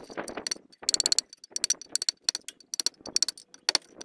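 Hand hammer striking a steel chisel to chip out the grid-cut cubes of stone from a stone block being hollowed into a sink bowl: repeated ringing metallic strikes, irregular, two or three a second.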